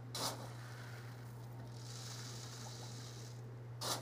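Granular activated carbon scooped with a cup and poured into a reactor canister: two brief gritty rustles, one just after the start and one near the end, over a steady low hum.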